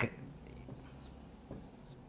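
Felt-tip marker drawing on a whiteboard: a faint rubbing scratch, with a light tick about a second and a half in.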